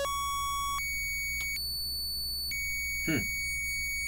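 Waldorf Blofeld synthesizer holding a high, thin, beep-like electronic tone. Its overtones drop out and come back in steps about once a second as a sound parameter is changed.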